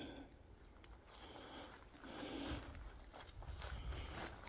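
Faint footsteps and rustling in dry leaf litter on a forest floor, a few soft swells of noise.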